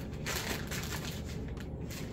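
A small package being torn and crinkled open by hand, with a dense rustle in the first second that eases into lighter crackles.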